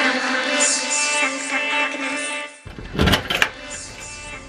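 Instrumental background music that cuts off abruptly about two and a half seconds in. It gives way to keys jangling and clicking in a brass deadbolt lock as the door is unlocked.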